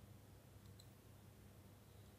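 Near silence: a faint steady low hum, with two faint computer mouse clicks close together about two-thirds of a second in, as an edge is selected.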